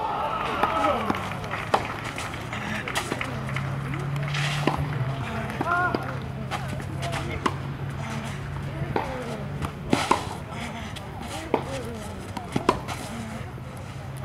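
Tennis rally: racquets striking the ball back and forth, sharp pops roughly every one to one and a half seconds, over a steady low hum.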